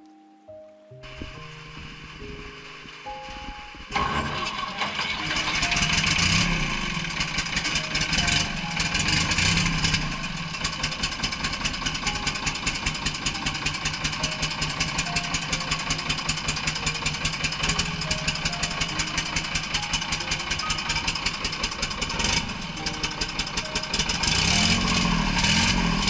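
Engine of a cable-drum winch for a mountain cargo lift starting up about four seconds in and then running with a fast, steady beat, louder near the end. Background music plays underneath.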